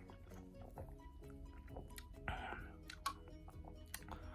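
Faint steady background music under quiet drinking sounds, sips and swallows from an aluminium can, with a short breathy rush about two seconds in and a small click a little after three seconds.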